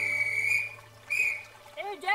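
A high, steady whistle-like tone held for about a second, followed after a short pause by a briefer one at the same pitch.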